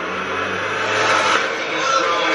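A car engine running, a low steady drone that fades out after a little over a second, under rising noise with faint voices.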